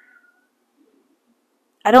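A house cat crying, one short faint meow at the start, heard from another room. A woman's voice begins near the end.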